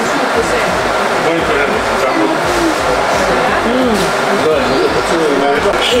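Indistinct chatter of several people talking at once over a steady background hum, with no single sound standing out.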